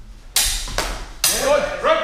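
Swords clashing in a fencing exchange: three sharp blade strikes about half a second apart, followed by a shout.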